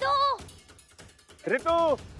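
Two drawn-out shouts of the name "Ritu!", one at the start and one about a second and a half later, each rising and then falling in pitch, over background music with faint rapid clicking.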